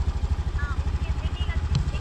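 Motorcycle engine idling, a rapid, even low throb, with faint voices in the background.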